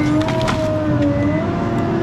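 Diesel engine of a heavy logging machine running steadily under load, its whine dipping slightly in pitch past the middle and then coming back up, with a few light clicks.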